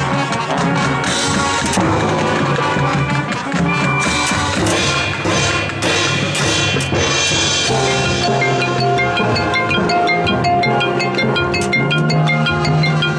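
Marching band playing, with drums and mallet percussion; from about eight seconds in, quick repeated high mallet notes come to the fore over sustained held notes.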